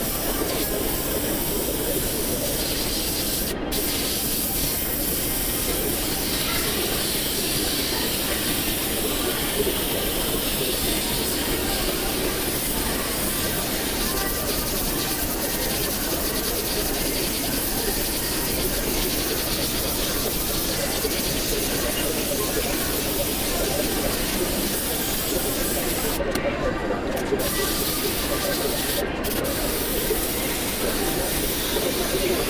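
Airbrush spraying paint onto a T-shirt: a steady hiss of compressed air that breaks off briefly about four seconds in and twice near the end.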